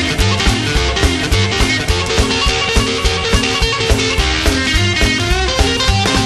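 Instrumental break of a rockabilly-style rock 'n' roll song: guitar lead over a fast, steady beat of drums and bass, with quick runs of guitar notes near the end.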